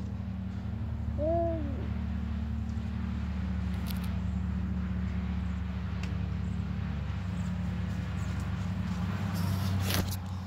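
A steady low hum, with one short hoot-like call that rises and falls about a second in and faint sharp clicks near four and six seconds.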